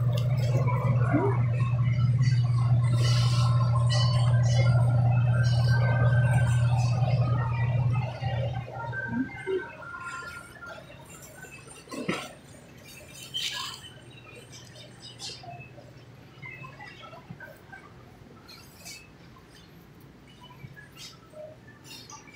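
Grocery store background: a steady low hum for about the first eight seconds, then faint scattered clicks and knocks.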